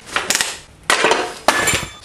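A steel pry bar levering the bottom-end ladder frame off a Honda L15 engine block. There are a few sharp metal clanks and scrapes as the frame breaks loose, and the last knock rings on briefly.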